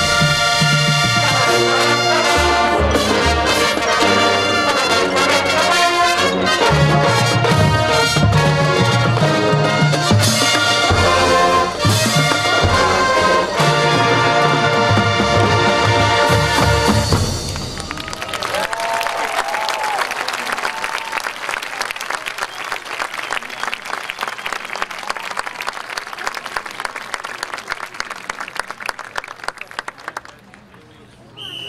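Full marching band, brass with drums, playing loud chords that cut off about 17 seconds in. Audience applause and cheering follow and slowly die down.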